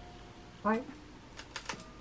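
A rice cake being bitten: a quick run of sharp, crisp crackling clicks about a second and a half in.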